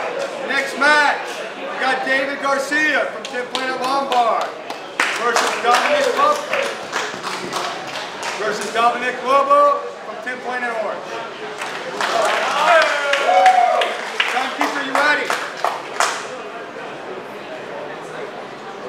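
Men's voices talking and calling out, with scattered hand claps that are thickest about five seconds in and again from about twelve to sixteen seconds, stopping shortly before the end.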